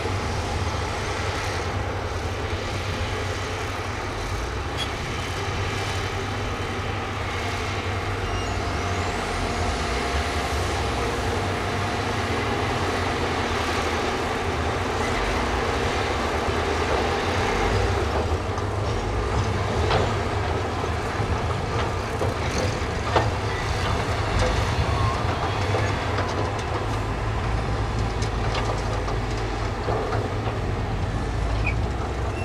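Heavy dump truck engines running steadily as their beds tip up to unload soil, with a bulldozer working alongside. Two sharp knocks a few seconds apart past the middle.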